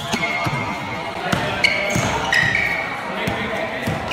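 A basketball dribbled on a hard indoor court floor, bouncing about twice a second, with short high-pitched squeaks of sneakers on the floor as players cut and shuffle.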